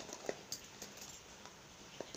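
A few faint clicks and taps in the first second as small objects are handled: a plastic container and a cable knocking lightly against each other and the floor.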